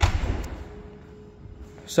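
Driver's door of a Mitsubishi L200 double-cab pickup shut once: a single heavy slam at the start that dies away within about half a second.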